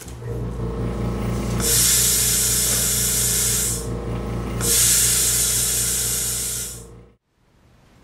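Electric air compressor of a tyre-air vending machine starting and running with a steady hum, while air hisses out of the hose twice, each for about two seconds. Both the hum and the hiss cut off suddenly about seven seconds in.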